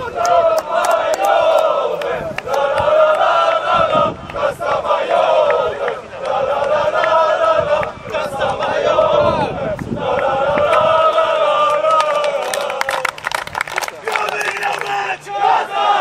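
A football team's players chanting together in a huddle, a loud victory chant repeated in phrases of about a second and a half, with shouts near the end.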